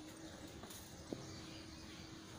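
Faint background with a steady low hum and a single sharp knock about halfway through.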